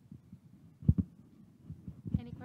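Handling noise from a handheld microphone: low, dull thumps and rumble, with a pair of thumps about a second in.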